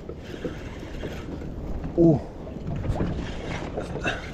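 Sea water lapping and sloshing against a small kayak's hull, with wind buffeting the microphone, a low steady rumble and a few faint knocks. A short "oh" comes about two seconds in.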